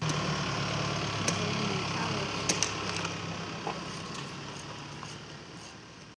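Street ambience with a steady low engine hum, like a parked vehicle idling, faint voices and a few sharp clicks, fading out gradually toward the end.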